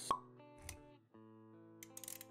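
Sound effects and music of an animated intro: a sharp pop just after the start, a soft low thud about half a second later, then music with held notes resuming after a brief drop.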